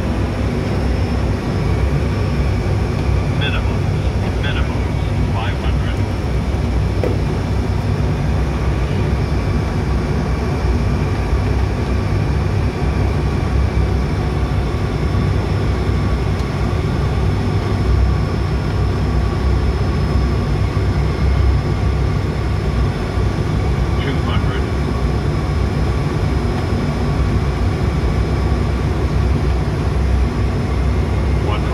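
Steady flight-deck noise of an ATR 72-600 turboprop airliner on final approach: the twin turboprop engines and propellers running as a loud low rumble with several steady whining tones above it.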